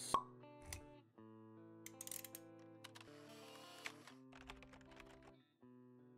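Quiet intro music: held notes of a short melody, with light pops and clicks laid over them and a sharp pop right at the start.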